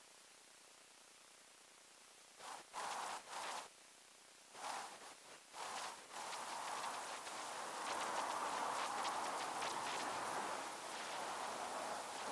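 A river running, a steady rushing that comes in about six seconds in, after a silent start and a few short rustles.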